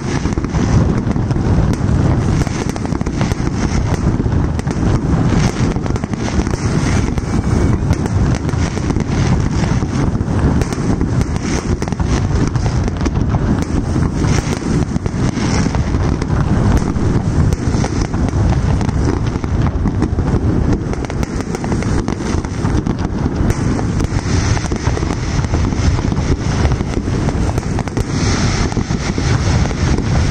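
Large fireworks display: shells bursting in a loud, dense barrage of many overlapping bangs and crackles.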